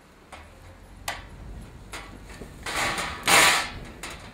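Metal skull jig being handled and tipped down onto a metal tray: a few light clicks, then two short scraping slides of metal on metal near the end, the second the loudest.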